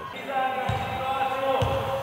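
A basketball bounced twice on the gym floor, about a second apart, as a player dribbles at the free-throw line before shooting. A steady held chord sounds along with it.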